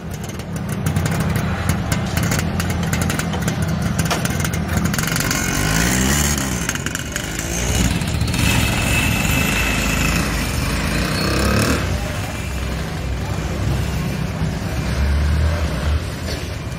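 Engine of a motorized cargo tricycle running steadily as it pulls away, with a motorcycle passing close by about halfway through.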